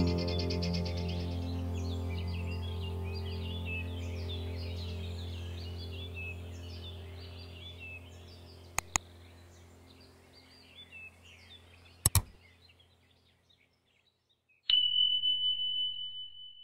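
Soft music with birds chirping, fading out over the first dozen seconds. Two quick double clicks, about three seconds apart, from a subscribe-button animation. Near the end a notification-bell ding rings on as a steady high tone.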